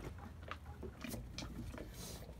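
Faint handling noises, a few soft clicks and knocks, as a dinghy's rope line is pulled in and tied off on a sailboat.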